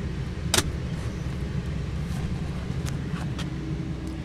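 Steady low hum of the 2015 Volkswagen CC's idling 2.0-litre turbocharged four-cylinder, heard inside the cabin. A single sharp click about half a second in comes from handling the rear fold-down armrest and its storage lid.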